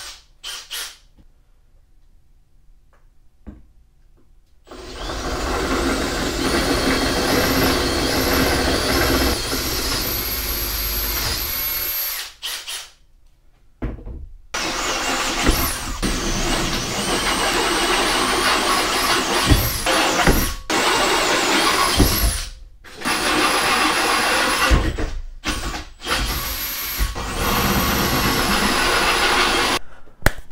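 Cordless drill boring out holes in a steel winch mounting plate to 3/8 inch, the motor running under load with a high wavering whine. It starts about four and a half seconds in and runs in several stretches broken by short stops.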